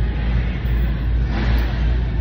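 A steady low rumble with a hiss of noise over it, briefly louder and brighter about one and a half seconds in.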